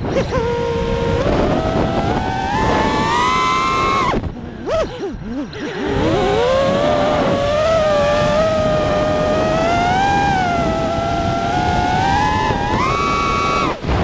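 FPV quadcopter's brushless motors whining through the onboard camera, the pitch rising and falling with the throttle. The whine drops away for about two seconds some four seconds in and again just before the end, when the throttle is cut.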